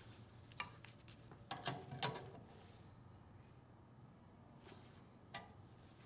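Faint metallic clicks and clinks of a wrench working metal tube fittings, with a small cluster of taps about two seconds in and a single click near the end.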